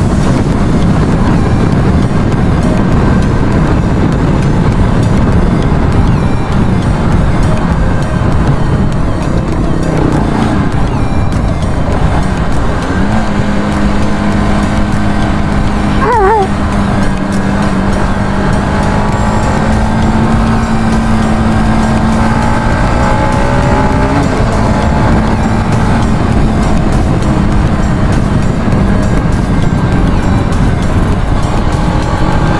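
Motorcycle ridden at road speed, heavy wind rumble on the handlebar-mounted camera's microphone. About 13 s in a steady engine tone comes through and climbs slowly for ten seconds, with a brief wavering falling tone around 16 s.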